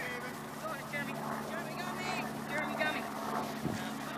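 Distant shouts and calls from players and spectators across a soccer field, several high-pitched voices overlapping, over a steady low hum.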